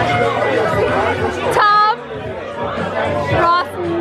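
Several young people shouting and chattering excitedly over each other in a noisy club, with music underneath for the first half. A sharp, high-pitched shout comes about one and a half seconds in, and a shorter one near the end.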